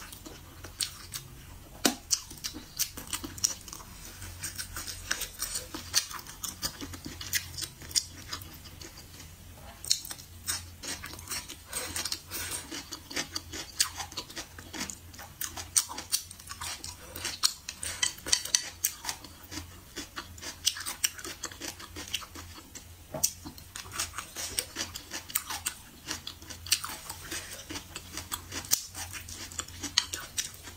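Close-up chewing of a mouthful of rice and stir-fried food, a dense, irregular run of sharp clicks and crunches.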